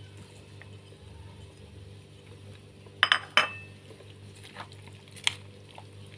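A cooking utensil clinking against cookware while ingredients go in: a sharp double clink with a short ring about three seconds in and one more clink near the end, over a low steady hum.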